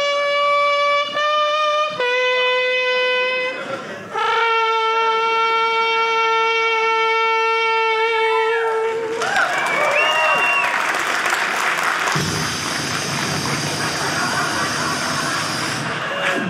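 A man's vocal imitation of a trumpet playing long held notes, the old TV station sign-off anthem, ending on one long note about nine seconds in. A stretch of loud noise with gliding sounds follows, settling into a steady hiss.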